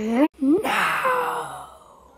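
A boy's voice: a held hummed note slides quickly upward and breaks off. Then comes a loud, breathy sigh that falls in pitch and fades out over about a second.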